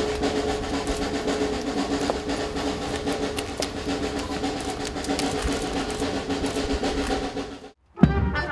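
Snare drum roll, held steadily with a ringing drumhead tone, cutting off suddenly near the end.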